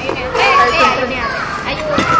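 Several young women talking excitedly over one another in high, lively voices, the words not clearly made out.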